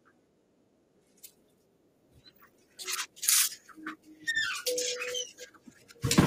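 Near silence, then from about three seconds in a run of irregular rustling and handling noises with a few short creaks, as a person sits back down at a desk.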